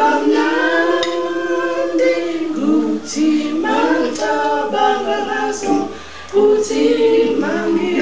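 A small group of voices singing a cappella in harmony, holding long notes, with a brief break between phrases about six seconds in.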